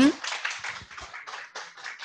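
Audience applauding, the clapping fading away over the two seconds.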